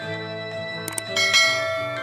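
Small handheld keyboard holding sustained reedy chords together with a strummed nylon-string classical guitar. A couple of short clicks come just before the middle, and a fresh, brighter chord is struck a little after it.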